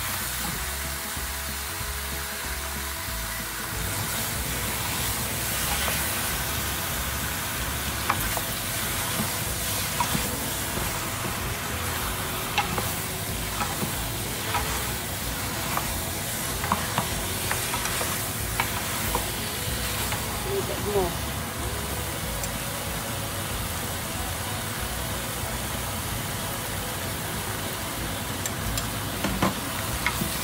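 Duck pieces stir-frying in a pan: a steady sizzle, with scattered scrapes and knocks as the meat is stirred and turned.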